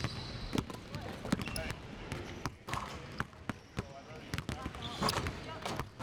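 Several basketballs bouncing on a hardwood court as players dribble, the bounces sharp, irregular and overlapping, with people's voices talking at times.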